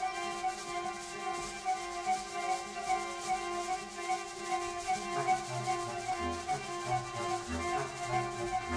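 Small acoustic ensemble of flute, violin, viola, bass clarinet, guitar and percussion improvising: several steady held tones sound together over a soft rubbing, scraping texture. About five seconds in, short low notes start coming in one after another beneath them.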